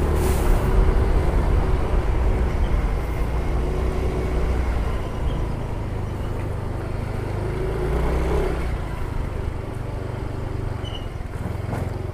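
Yamaha Mio i 125 scooter's single-cylinder engine running as it rides along, with steady road and wind noise.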